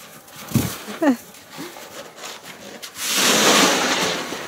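Snow shovels scooping and scraping through snow, with a low thump about half a second in and a louder scrape of about a second near the end.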